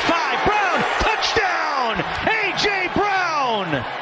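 Excited TV play-by-play commentary: a man's voice calling a touchdown run, its pitch swooping up and down rapidly.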